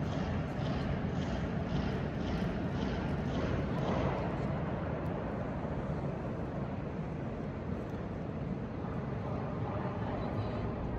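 Steady, even rumble of background noise inside the huge underground chambers of a salt mine, with faint, rapid, regular ticking at about three a second through the first few seconds.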